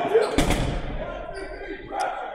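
A dodgeball hitting the hardwood gym floor: one sharp bounce about half a second in.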